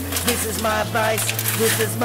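A person's voice, not clear enough for words, over a steady low hum whose pitch shifts slightly about a second in.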